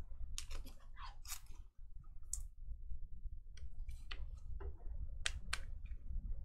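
Trading cards being handled on a table: a scattering of light clicks and rustles of card stock, with a short lull in the middle.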